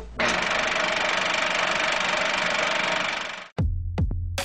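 A steady, even electric buzz that lasts about three seconds and cuts off abruptly. Electronic music with a drum beat starts near the end.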